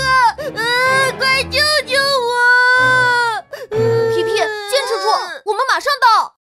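A cartoon piglet's high, childlike voice crying and whimpering in pain, wailing 'it hurts, my tummy hurts' in a wavering, sobbing tone: a character acting out a stomach ache.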